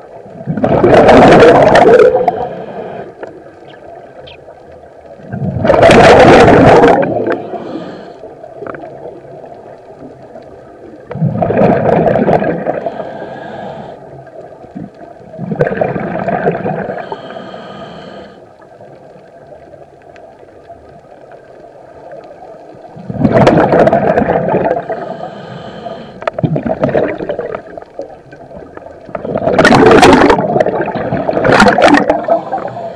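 Scuba diver breathing through a regulator, heard underwater: loud gurgling surges of exhaled bubbles, six or seven of them about every four to six seconds, with quieter stretches between and a faint steady hum underneath.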